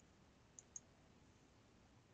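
Two faint computer mouse clicks, about a fifth of a second apart, a little over half a second in; otherwise near silence.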